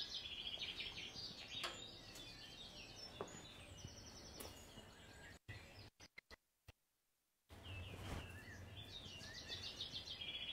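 Faint birds chirping in short repeated notes. Just past the middle the sound cuts out almost completely for about two seconds, then the chirping returns.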